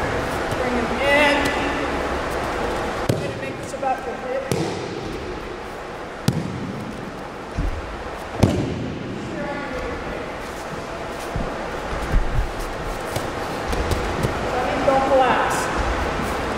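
Thuds and slaps of a body hitting wrestling mats as an aikido partner is thrown and takes rolls and breakfalls, a series of irregular impacts several seconds apart, the loudest about eight seconds in.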